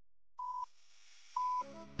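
Countdown timer beeping: two short, high single-pitch beeps one second apart, the first about half a second in and the second about a second and a half in.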